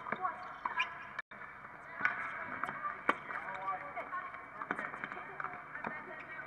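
Tennis ball struck by rackets and bouncing on a hard court during a doubles rally: a handful of sharp pops about a second apart, with players' voices and calls mixed in. The audio cuts out for an instant about a second in.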